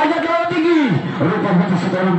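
A man's voice calling out in long, falling cries, then holding a steady drawn-out note in the second half.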